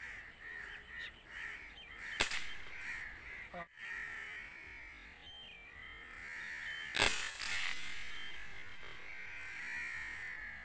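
Crows cawing repeatedly in the trees. About seven seconds in comes the sharp crack of a Cometa Fusion .22 air rifle shot, the loudest sound, with a smaller click about two seconds in.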